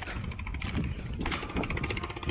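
Footsteps crunching on loose stones and gravel on a rocky slope, with small irregular clicks of stones knocking together, over a low rumble on the microphone.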